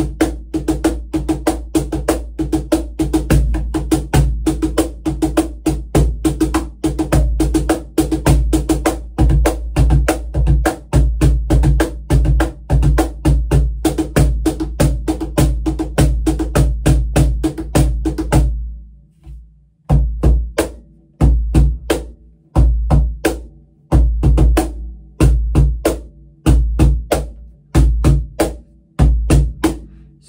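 Pearl Music Genre Primero cajon played by hand: a fast, steady groove of strikes on its meranti face plate, mixing deep bass tones with the crisp rattle of its built-in snare wires, for about eighteen seconds. After a short pause, a slower, sparser beat in spaced groups of hits.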